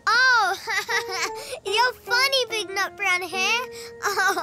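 A child's high-pitched voice: one long rising-and-falling exclamation, then a run of giggles and short laughs.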